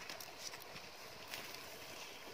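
Small wood fire crackling under grilling fish: faint, irregular pops and clicks over a low hiss.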